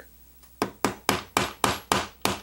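A small brass-and-nylon gunsmith's hammer tapping a pin punch to drive out the extractor of a Beretta PX4 Storm pistol slide. It makes about six sharp taps, roughly four a second, starting a little over half a second in.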